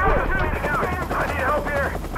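Soldiers shouting over the steady rumble of a helicopter and bursts of machine-gun fire, in a dense film battle mix.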